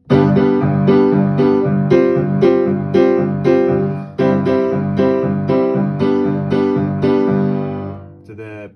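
Steinway upright piano playing repeated chords in a steady rhythm over a G held in the bass, moving from a G suspended chord to C and back to G, with a short break about halfway through.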